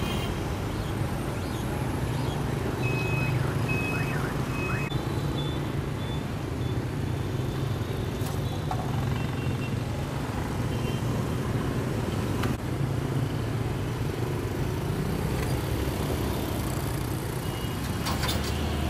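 Dense city traffic, mostly scooters and motorbikes with some cars, running steadily with a low engine hum. Three short high beeps sound a few seconds in.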